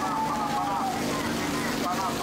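Outdoor street-market ambience: a steady noisy hubbub with faint voices of people nearby.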